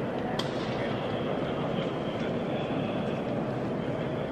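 Steady, indistinct room noise of a vast, echoing basilica interior heard from the gallery inside St. Peter's dome, with a faint click about half a second in.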